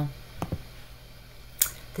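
Two quick clicks of a computer mouse about half a second in, over a faint steady low hum.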